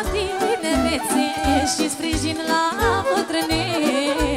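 A woman singing a Romanian folk party song into a microphone, her melody wavering and ornamented, over amplified band backing with a steady bass beat.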